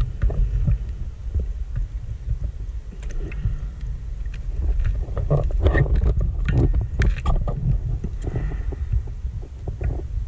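Underwater noise picked up on a diver's camera: a steady low rumble of water movement, with a run of irregular clicks and crackles about five to eight seconds in.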